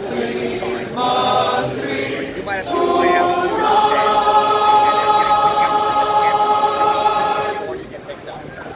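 Men's glee club singing unaccompanied in close harmony, a few short phrases and then a long held final chord from about three and a half seconds in, cut off just before the end as the song finishes.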